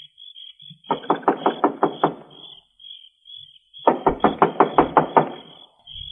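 Knocking on a door as a radio-drama sound effect: two quick runs of raps, one about a second in and another about four seconds in, with no answer in between.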